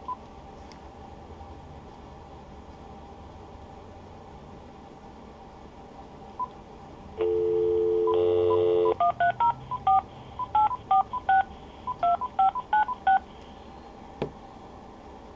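Cordless Uniden DECT 6.0 phone: a few short key beeps, then a dial tone comes on about seven seconds in and is cut off after under two seconds by a quick run of touch-tone (DTMF) digits in three groups as a phone number is dialed.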